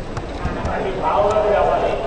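Voices talking or chanting, louder from about a second in, with a few light clicks and taps scattered among them.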